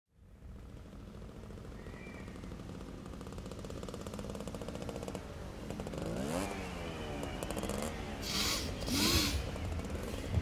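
A low, fast-rattling drone that slowly grows louder. About six seconds in, a voice joins with long moans that waver up and down in pitch, followed by two short sharp breaths.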